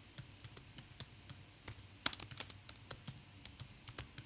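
Typing on a computer keyboard: irregular key clicks, with a quicker run of keystrokes about two seconds in.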